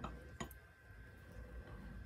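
A single sharp, faint click from a benchtop ring stretcher/reducer about half a second in, as its screw handle is turned to stretch a ring on the mandrel. After it there is only a low, quiet hum.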